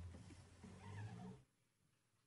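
The last held chord of a slow devotional song dies away. A brief, faint sound with wavering pitch follows, then the track cuts to near silence about one and a half seconds in.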